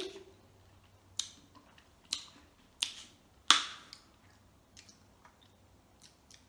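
Close-up wet mouth sounds of eating: four sharp smacks and clicks of chewing, under a second apart, the last the loudest.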